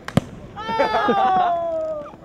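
A single sharp knock just after the start, then a man's long excited yell that slides steadily down in pitch for about a second and a half.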